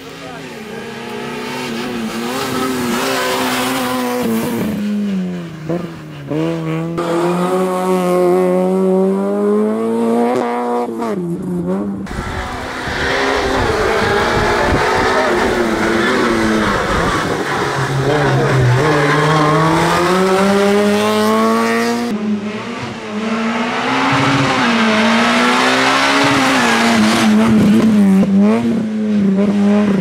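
Peugeot 106 rally car's engine revving hard, its pitch climbing and dropping again and again as it accelerates and lifts between the slalom cones, with tyre squeal at times.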